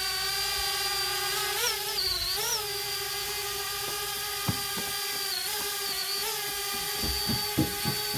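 Parrot Bebop 2 quadcopter hovering close by, its four motors and propellers making a steady high-pitched whine whose pitch briefly dips and swells several times as it is brought down and holds position. A couple of short sharp knocks sit on top, about halfway and near the end.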